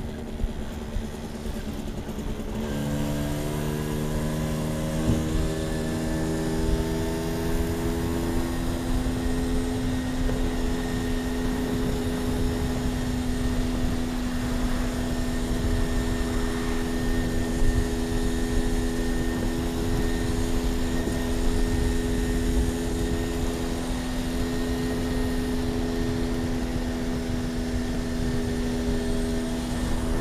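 Polini-tuned small motorbike engine heard from on board while riding. It picks up speed over the first several seconds, its pitch climbing, then holds a steady note at cruising speed, with wind rumble on the microphone.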